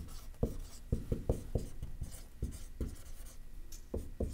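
A marker writing on a board: a quick, irregular series of short strokes.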